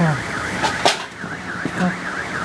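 A car alarm outside, its electronic siren warbling up and down rapidly, about four times a second. A sharp click sounds a little under a second in.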